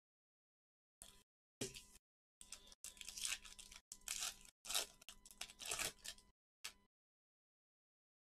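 The shiny foil wrapper of a trading-card pack being torn open and crinkled by gloved hands, heard as a run of faint tearing and crinkling bursts. It starts about a second in and stops about a second before the end.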